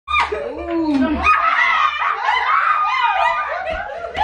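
A group of people laughing and calling out over one another, several voices at once in a small room.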